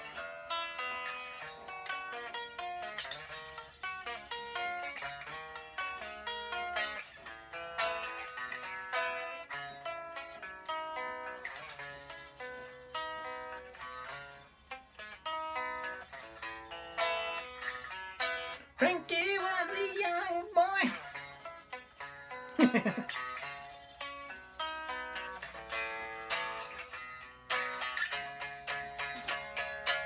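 Unfinished plywood electric guitar being played, a steady run of single picked notes and chords with a thin, unamplified-sounding twang. About two-thirds of the way through, a wavering held tone is followed by a quick falling glide.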